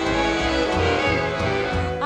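1945 swing jazz band recording playing held chords over a steady bass beat, with no singing in this stretch.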